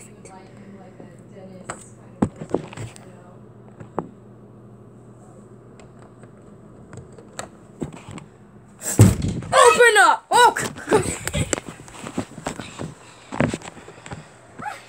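Interior door with a brass knob being handled: a few faint knob clicks, then a loud, squealing creak that glides in pitch as the door swings open about nine seconds in, followed by several knocks and thuds.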